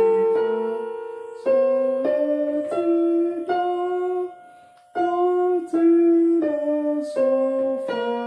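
Yamaha portable keyboard on a piano voice, playing a slow, simple melody in the key of F. Each note is held about half a second, with a short break a little after halfway through.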